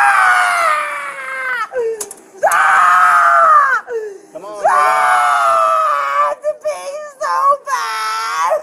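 A woman screaming and wailing in three long, high-pitched drawn-out cries with short gaps between them, then shorter broken cries near the end.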